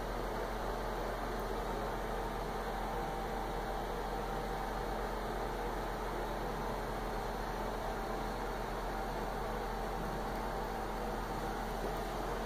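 Steady room ventilation noise: an even hiss with a low hum and a few faint steady tones, unchanging throughout.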